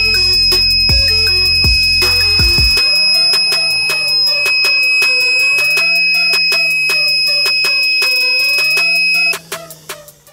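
Small piezo buzzer on a homemade transistor rain sensor sounding one steady high-pitched tone, the alarm that the sensor plate is wet; it cuts off about nine seconds in. Background music plays under it.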